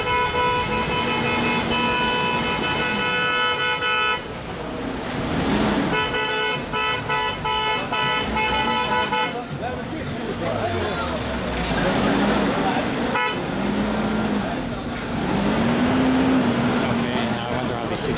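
A vehicle horn held in two long, steady blasts, the first about four seconds and the second about three, over road traffic noise in a queue of cars and trucks.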